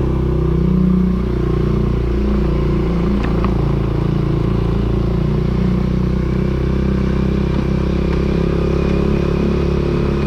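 Small motorcycle engine running while being ridden, swelling in the first second as it pulls away, then holding a steady pace.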